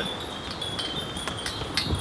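Wind chimes tinkling, with several light strikes and high, thin ringing tones that overlap and hang on.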